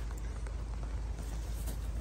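Low, steady rumble and faint hiss of wind and handling noise on a handheld phone's microphone, with no distinct events.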